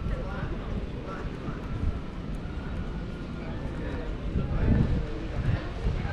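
Outdoor street ambience: indistinct voices of people nearby over a steady low rumble, with a few low thumps in the second half.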